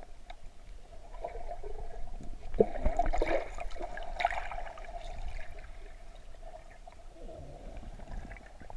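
Muffled underwater water sound: water swishing and gurgling around the submerged camera, with a louder stretch of sloshing and bubbly clicks about three to four seconds in.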